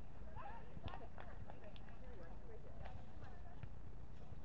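Distant, indistinct voices of several people talking and calling across open sand courts, with a few short sharp knocks over a steady low rumble.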